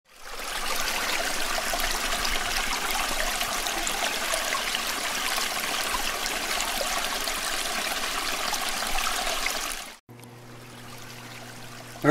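Running water like a trickling stream, fading in at the start and stopping about ten seconds in. It is followed by about two seconds of a much quieter, steady low hum.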